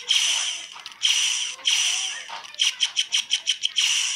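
Blaster sound effects played by a DFPlayer Mini through a small, thin-sounding breadboard speaker. The effect is fired three times, then stutters in a rapid string of about nine clipped repeats in under a second, then fires once more. The retriggers cut each shot off early, which the builder takes as needing a little more delay in the code.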